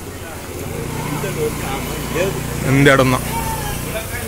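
A motor vehicle's engine running close by as a steady low hum that swells about a second in and fades near the end, over the chatter of passers-by on a busy street.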